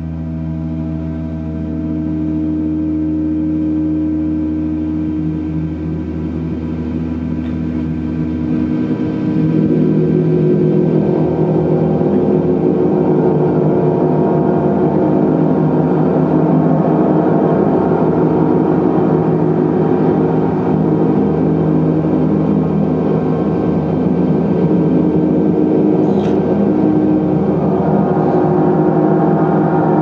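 Large suspended gongs played continuously with a mallet: a sustained, shimmering wash of overlapping deep tones and overtones. It swells louder and brighter about nine seconds in and rises again near the end.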